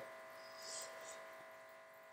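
Quiet room tone: a faint, steady electrical hum made of several high, even tones, with a soft brief hiss about half a second in.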